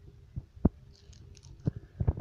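Hands handling a plastic DVD case close to the microphone: a few soft knocks and clicks, the loudest about two-thirds of a second in, over a faint steady hum.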